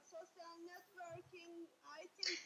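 Near silence, with a faint high-pitched voice in the background made of short held notes, like a child singing.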